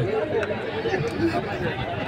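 Crowd chatter: many men talking at once in a steady babble, with no single voice standing out.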